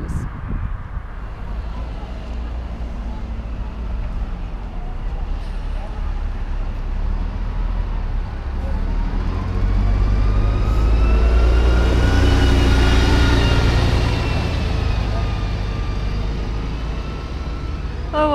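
A double-decker bus driving past close by, over a background of road traffic: its diesel engine rumble builds to a peak about two-thirds of the way through, the engine note rising and then falling as it goes by, before it fades away.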